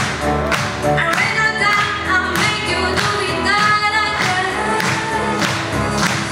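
A mixed choir singing a pop song with accompaniment and a steady beat.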